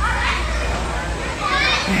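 Children's voices and play chatter in the background, over a steady low hum.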